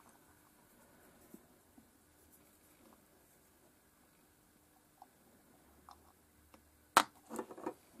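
A small 4-ohm 3-watt loudspeaker cone gives one sharp pop about seven seconds in, then a few smaller crackles, as 9-volt battery leads are brushed across its terminals with a small spark. The crackle shows that the speaker works. Before it there are only faint handling clicks.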